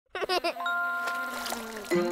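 Cartoon logo jingle: three quick warbling notes, then a bell-like chime chord that rings on for about a second, with a note sliding down near the end.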